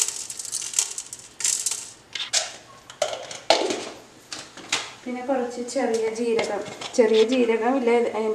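Sharp clinks and taps of a measuring spoon against glass spice jars and an aluminium pressure cooker, with short scrapes of spices tipped in and jar lids handled. A woman's voice talks over the last few seconds.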